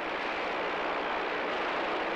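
Steady hiss of CB radio static from the receiver's speaker in the gap between transmissions, even and unchanging.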